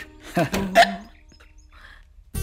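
A person's brief vocal utterance about half a second in, over faint background film music.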